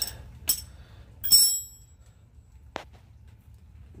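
Metal hand tools (a socket and a combination wrench) clinking against each other and the concrete floor: a small click, then a loud ringing clink about a second and a half in, and a sharp tick near the end.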